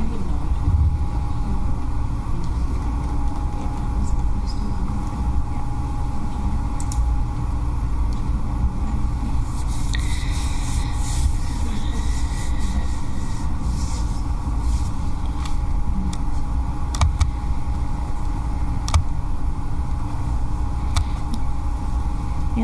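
Steady low rumble of room background noise, with a faint steady hum and a few scattered clicks.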